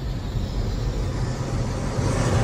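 Cinematic logo-intro sound effect: a dark, rumbling swell of noise with a hiss on top, building steadily.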